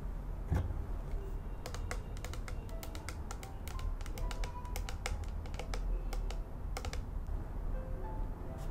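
Long fingernails tapping and clicking on a plastic skincare bottle, a quick, uneven run of clicks that comes in bursts, with soft music under it.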